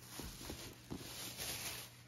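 A cardboard box being handled: a few light taps in the first second, then a short rustling scrape.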